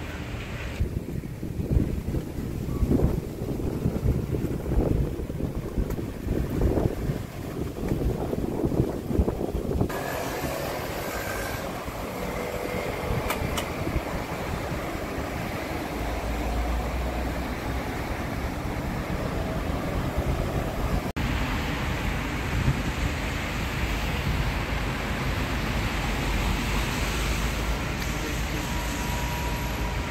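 Wind buffeting the microphone in gusts of low rumble, giving way about a third of the way in to a steadier outdoor wind and rumble.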